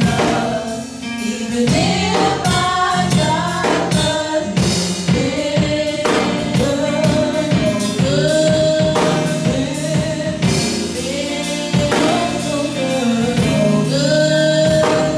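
Gospel praise song sung by three women at microphones, their voices holding long sung notes over accompaniment with a steady beat.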